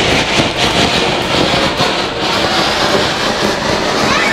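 Loud, continuous crackling made of many rapid pops.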